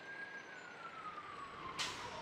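Faint emergency-vehicle siren in one slow wail, its pitch gliding steadily downward, with a short hiss near the end.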